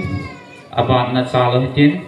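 A man's voice speaking into a microphone, amplified over a PA system, with drawn-out vowels.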